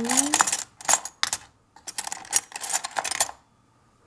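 Metal, ceramic and plastic spoons clinking and rattling against each other as hands rummage through a wooden box of spoons. A quick string of sharp clinks with a short pause about a second and a half in, stopping about three and a half seconds in.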